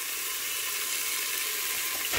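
Frozen green beans sizzling steadily in melted butter and bacon grease in a hot pan.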